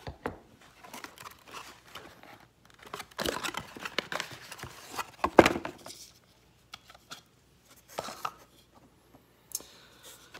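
Cardboard box and packing being handled and torn open to take out a tweeter: irregular rustling, crinkling and tearing, loudest from about three to five and a half seconds in, then a few light clicks as the tweeter is handled.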